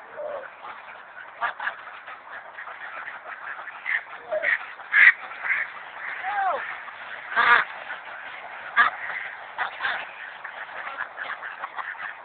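Mallard ducks quacking in short, scattered calls, the loudest about five and seven and a half seconds in.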